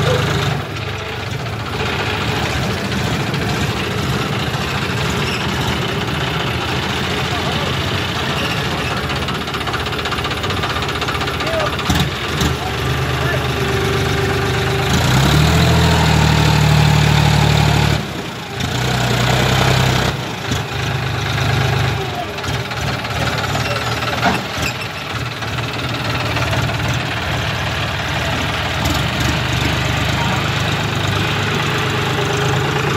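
John Deere tractor's diesel engine pulling a trailer loaded with soil through loose ground. It runs steadily, revs up for about three seconds halfway through, then drops back sharply.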